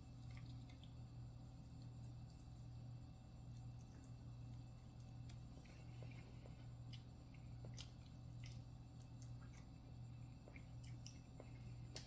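Faint, scattered wet clicks and smacks of a person chewing and pulling apart sauced fried chicken, over a steady low hum.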